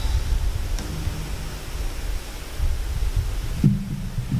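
Low rumbling noise from a lectern microphone being handled at close range, with a low hummed voice coming in near the end.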